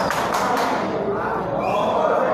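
Crowd of spectators shouting and cheering, with a few sharp claps in the first half-second.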